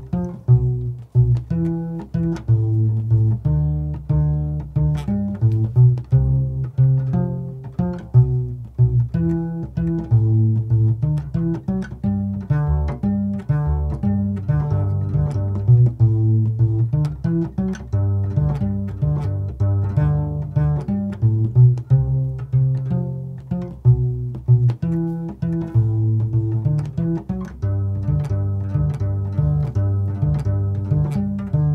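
Mariachi guitarrón, the large fretless six-string bass guitar, plucked in octaves: a steady run of low notes, each starting sharply and dying away.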